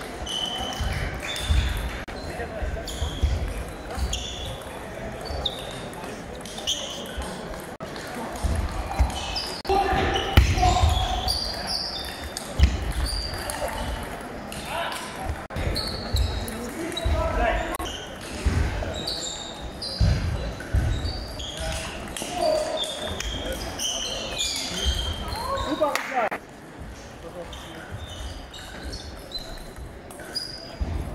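Table tennis balls clicking back and forth on table and bats in rallies, short sharp ticks at an uneven pace, echoing in a large sports hall, with low thuds of footwork and voices around the hall.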